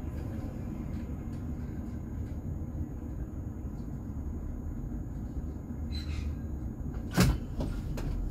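Steady low rumble from a standing tram's equipment, with a short hiss and then a single loud clunk about seven seconds in.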